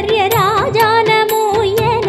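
Tamil devotional song in Carnatic style: a melody bending up and down in pitch over a steady drum beat of about three to four strokes a second.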